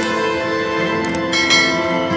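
Intro music of held, bell-like chiming tones. About a second in, a couple of short mouse-click sounds, then a bright bell ding, the sound effects of a subscribe-button animation.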